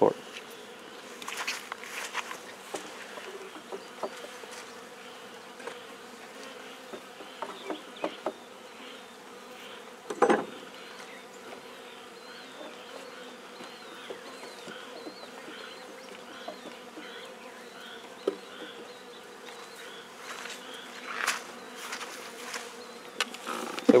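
Honey bees buzzing steadily around an opened hive, a colony stirred up during a nuc-to-hive transfer. A few short knocks break in, the loudest about ten seconds in.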